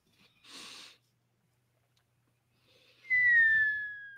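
A single high whistle sliding slowly downward, about a second and a half long, starting about three seconds in. A short breathy puff of noise comes near the start.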